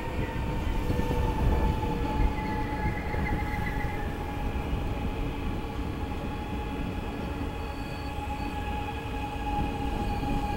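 NS VIRM double-deck electric train braking hard as it rolls past: a low rumble of wheels on rail with a steady whining tone that sinks slowly in pitch as the train slows.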